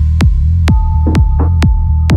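Minimal techno track: a deep kick drum about twice a second over a throbbing bassline. Partway through, a held synth tone changes to a slightly lower pitch, and two short percussion hits come in.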